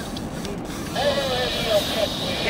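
Shimano Baitrunner spinning reel being cranked to bring in a fish on a bent rod, a steady mechanical whirring that starts about a second in.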